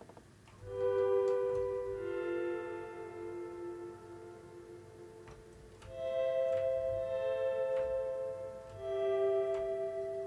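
Dark Intervals 'Guitars in Space' Guitar Swell preset: sampled clean electric guitar chords that swell in and are held like a pad, played from a keyboard. A new chord comes in every two to four seconds, the music dipping slightly around the fourth second before the next swell.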